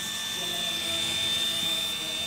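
Small DC motor (dinamo) spinning the impeller of a homemade mini water pump, running dry at full speed with a steady high whine, blowing air out through its drinking-straw outlet. It is running off a phone charger, and it is really loud.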